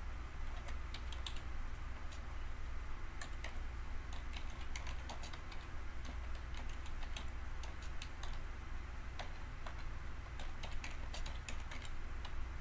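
Typing on a computer keyboard: irregular sharp key clicks in short runs, over a steady low hum.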